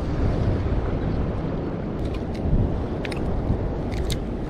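Wind buffeting the microphone, a steady low rumble, with a few faint clicks around the middle.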